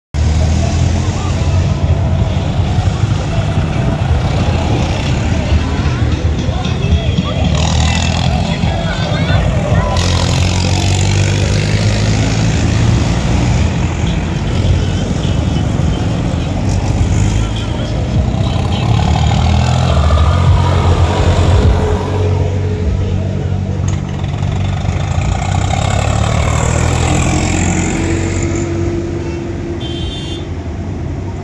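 A stream of road vehicles driving past close by: a diesel light truck, tractors, motorcycles and cars, their engines making a loud, steady low rumble, with voices mixed in.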